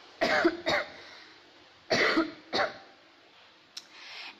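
A person coughing: two short double coughs, the second pair about a second and a half after the first.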